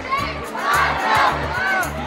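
Upbeat dance music with a steady bass beat, mixed with a crowd shouting and cheering.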